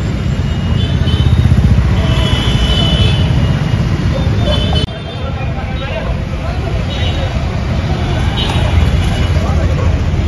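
Street ambience: road traffic noise with people's voices talking among the onlookers, broken by a sudden change about five seconds in.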